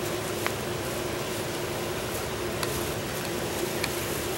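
Steady background hum over even noise, with a few faint soft clicks.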